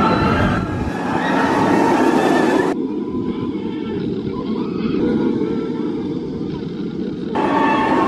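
Steel roller coaster train rumbling steadily along its track as it passes. For a few seconds in the middle the sound turns dull and muffled, then clears again.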